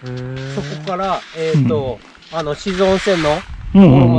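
People talking, with one voice holding a long drawn-out vowel at the start. A short stretch of hissing noise comes about two-thirds of the way through.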